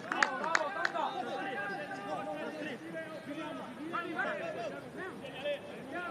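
Several voices at a football pitch shouting and talking over one another, with no words that can be made out. There are a few sharp knocks in the first second.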